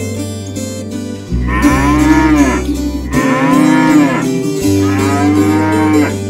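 A bull mooing three times, each moo long and rising then falling in pitch, over steady backing music.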